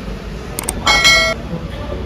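A single short toot, one steady tone held for about half a second about a second in, with two faint clicks just before it, over the showroom's background hum.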